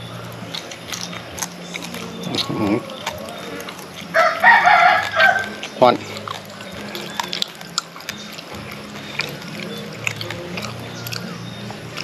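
A rooster crows once about four seconds in, one call lasting about a second and a half. Around it are small clicks and smacks of someone eating.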